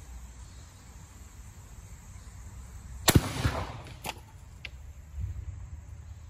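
A single shot from a Marlin 1894 lever-action rifle in .45 Colt about three seconds in, with a short echo after it. About a second later come two fainter sharp knocks.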